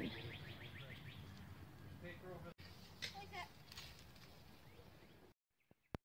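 Quiet outdoor ambience with a few faint bird chirps, dropping to near silence at a cut near the end.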